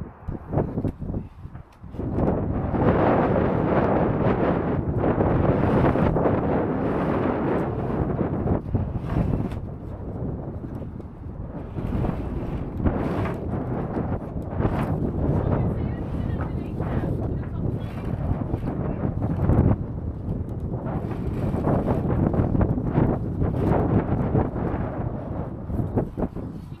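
Wind buffeting the microphone in strong, uneven gusts.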